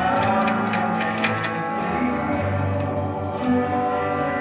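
A live church worship band plays an instrumental stretch: held chords with guitar, and a quick run of strummed strokes in the first second or so. It is heard from among the audience seats, so it sounds roomy rather than close-miked.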